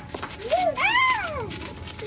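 A drawn-out cry that rises and then falls in pitch, lasting about a second, starting about half a second in.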